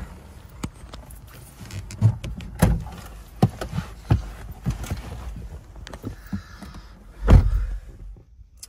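Scattered knocks, clicks and rustles of someone moving about in a car's driver's seat, with a few heavier thumps and the loudest, a deep thump, near the end.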